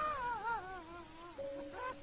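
A cartoon cloud character crying: a high, wavering wail that falls in pitch in waves, then short sobs near the end, over sustained music notes.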